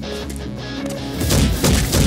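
Action-film background score with dubbed fight-punch impact effects, a quick run of loud hits in the second half.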